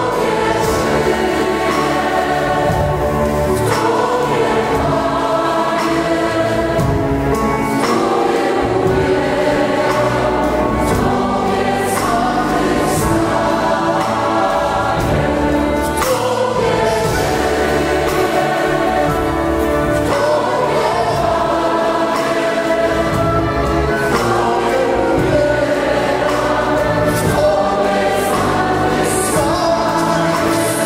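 A large mixed choir singing a Christian worship song, accompanied by a band with keyboard, drums and strings.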